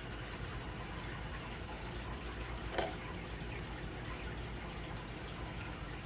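Sugar syrup for hard candy simmering steadily in a saucepan, with one light click a little under halfway through.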